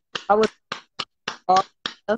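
A run of sharp clicks made with the hands, about three a second and slightly uneven, between a woman's short spoken words.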